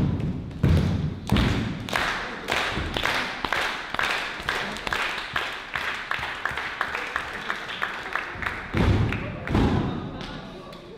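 Wrestlers' bodies hitting the wrestling ring's canvas, three heavy thuds at the start and two more near the end. In between comes a run of sharp, evenly spaced taps, about three a second.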